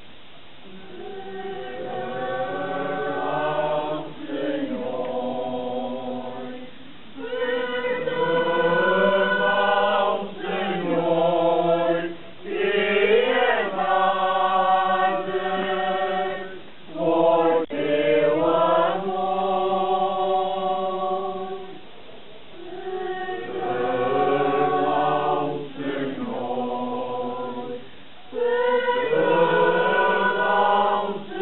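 A choir singing an unaccompanied slow religious chant in sustained phrases a few seconds long, with short breaks between them.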